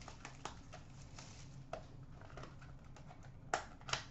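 Trading card packs and cards being handled: soft rustles and light clicks, with two sharper clicks near the end.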